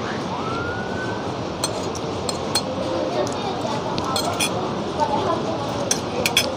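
Metal cutlery clinking against plates several times as people eat, over steady background noise with faint voices.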